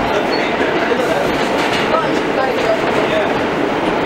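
Inside an R160A subway car running on the rails: steady, even wheel-and-track noise, with passengers' voices faintly under it.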